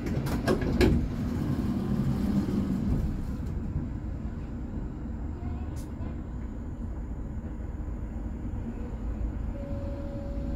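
Low, steady vehicle rumble in street noise, with a few sharp clicks in the first second.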